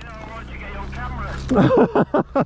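Low, steady motorcycle engine hum that grows louder over the first second and a half, with a man's voice coming in loudly near the end.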